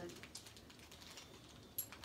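A few faint small clicks, with one sharper click near the end, as a spring-loaded universal socket is handled and flexed in the hands.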